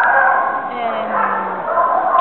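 A large kennel of beagles howling and yelping together in a loud, continuous chorus of many overlapping wails.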